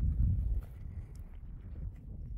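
Wind buffeting the microphone outdoors: a low rumble, strongest in the first half second, then settling to a fainter steady rush.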